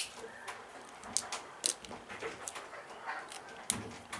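A veranda window knocking and creaking in strong wind: a string of short sharp knocks, irregularly spaced, several to the second. It can pass for a dog barking.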